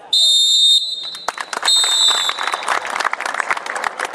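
A referee's whistle blows two long blasts, ending the players' moment of silence. Spectators break into applause about a second in and keep clapping.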